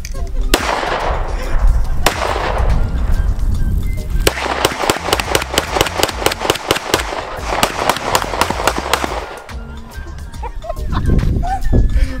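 9mm handgun shots fired into a pond. There are two single shots in the first couple of seconds, each with a long fading echo, then a rapid string of shots, several a second, lasting about five seconds.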